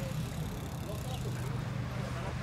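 Indistinct distant voices of people talking over a steady low engine hum.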